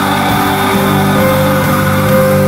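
Live praise band playing a loud instrumental passage of held notes and chords on electric bass, keyboard and drums.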